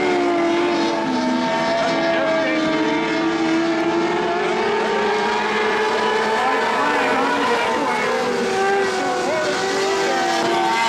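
Engines of several micro modified dirt-track race cars running at racing speed, their engine notes overlapping and shifting slightly in pitch as the cars go through the turns.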